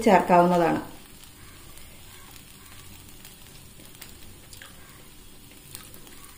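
Chopped bread and egg sizzling faintly and steadily in a non-stick frying pan, with a few light touches of a wooden spatula.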